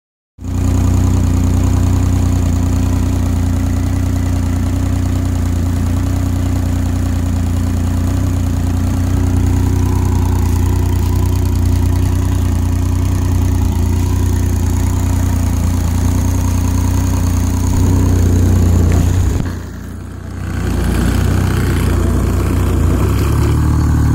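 Outboard motor idling steadily with its cowling off, cooled from a garden hose. It briefly drops quieter about twenty seconds in, then runs on as before.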